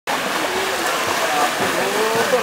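Water splashing from two swimmers racing across a pool, with onlookers' voices over it.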